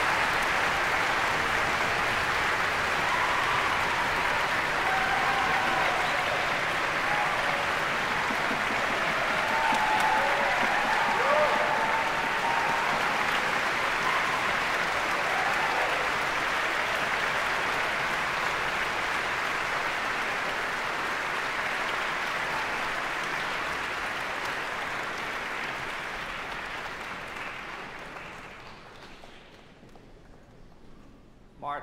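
Audience applauding steadily, dying away over the last few seconds.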